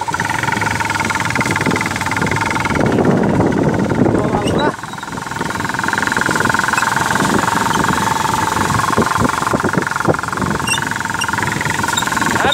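Yamaha motorcycle engine running steadily while being ridden. A louder rushing noise covers it for about two seconds a few seconds in, then stops suddenly.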